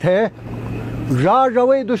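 A man's voice reciting poetry in a drawn-out, chanted delivery, with held and gliding notes. It breaks off for a noisy pause of under a second, then resumes, over a steady low hum.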